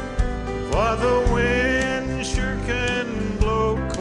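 Instrumental break of a country song, played on acoustic guitar and bass. A lead instrument slides up into a long held note about a second in.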